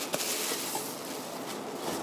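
Bubble wrap rustling and crinkling as hands pull a plastic model drop tank out of its wrapping, with a few faint clicks early on.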